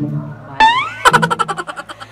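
A comic sound effect over background music: a sudden rising whistle-like glide about half a second in, then a fast wobbling twang, about ten pulses a second, that dies away.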